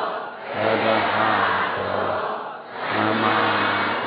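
Group of voices chanting in unison in long, held phrases, typical of Buddhist devotional chanting, with short pauses for breath just after the start and near the three-second mark.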